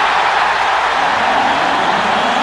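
Home arena crowd cheering steadily after a goal by the home team.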